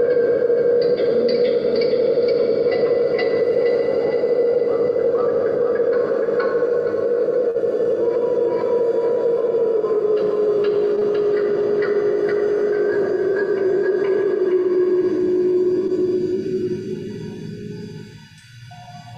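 Live electronic drone music: a strong sustained low tone that slowly sinks in pitch, with scattered higher tones entering and holding above it. It fades away over the last couple of seconds.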